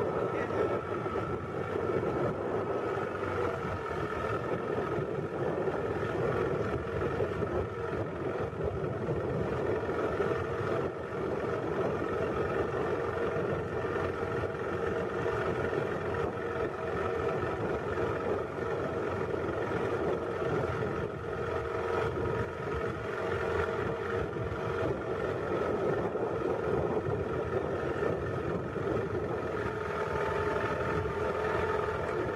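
Boat engine running steadily at an even, unchanging pitch, with the wash of water under it.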